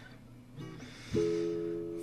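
A guitar chord plucked about a second in and left ringing, after a quiet pause between sung lines of a slow solo ballad.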